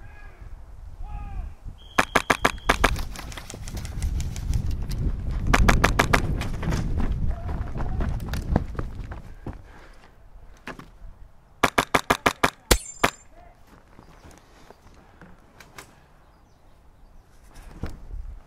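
Airsoft guns firing in rapid bursts: a quick string of shots about two seconds in, a longer run of shots around five to six seconds, and another quick string about twelve seconds in, with a low rumble of movement under the middle of it.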